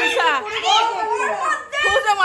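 Excited, high-pitched women's voices squealing and shouting over one another, with no clear words.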